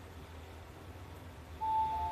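Fujitec XIOR elevator car running with a low steady hum, then its arrival chime sounds about a second and a half in: a clear high tone, joined by a slightly lower second tone just before the end, as the car reaches its floor.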